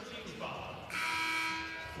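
Basketball arena horn sounding once, a steady buzzing tone that starts about a second in and lasts about a second.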